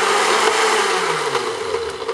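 Electric countertop blender running on a liquid mixture, a dense steady whir. Over the second half the motor's pitch falls and the sound fades as it winds down after being switched off.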